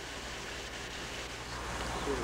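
Steady background hiss with a low hum underneath, and no distinct sound event.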